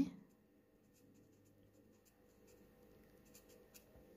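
Felt-tip marker writing a word on a paper worksheet: faint scratchy pen strokes.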